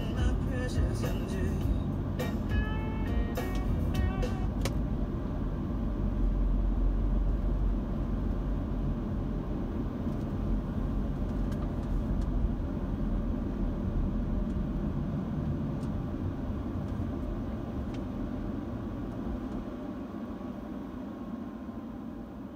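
Steady low rumble of road and engine noise heard inside a moving car's cabin, easing off over the last several seconds as the car slows. A few seconds of music from the car radio at the start.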